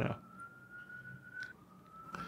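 Faint, thin high-pitched whistling tone that slowly rises in pitch, dips once about one and a half seconds in, then rises again, over a low background hum.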